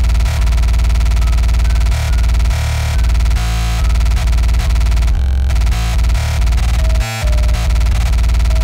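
Extratone electronic music: kick drums at about 1120 beats a minute, so fast they merge into a continuous buzzing bass, with a music-box style melody in F minor. The beat drops out briefly about seven seconds in.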